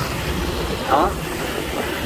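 Honda Dream II motorcycle's single-cylinder four-stroke engine running steadily while under way, with wind and road noise.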